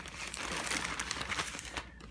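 Plastic wrapping crinkling and rustling as a baby's cloth sleeper is pulled out of it, a dense crackle that dies away shortly before the end.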